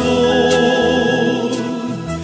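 Christian hymn music with a choir holding one long sustained chord that fades slightly near the end.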